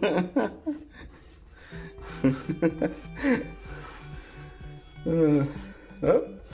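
Chalk scratching on a painted chalkboard as letters are written, faint under background music, with short bursts of a voice and laughter.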